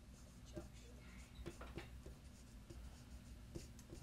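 Dry-erase marker writing on a whiteboard: a string of short, faint squeaking strokes as a word is written out.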